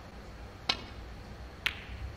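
Two sharp clicks of snooker balls about a second apart: the cue tip striking the cue ball, then the cue ball hitting an object ball with a short ring.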